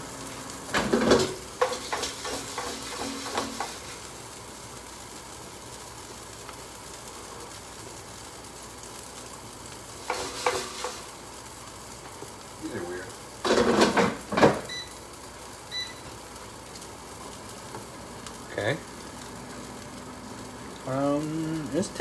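Black bean burger patties frying in a hot pan with a little olive oil, giving a steady sizzle throughout. Several clatters of utensil and pan break in, the loudest a few seconds past the middle.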